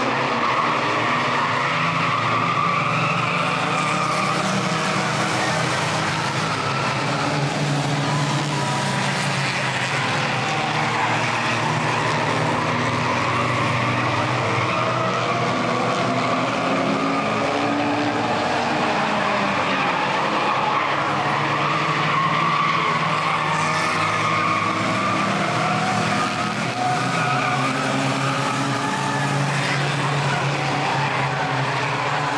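A pack of front-wheel-drive compact race cars running at speed, several engine notes overlapping and rising and falling as the cars accelerate and lift through the turns, with tyre squeal and road noise under them.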